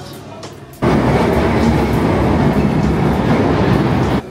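London Underground tube train pulling into the platform: a loud rumble and clatter of wheels on rail that starts abruptly about a second in and runs until a sudden cut.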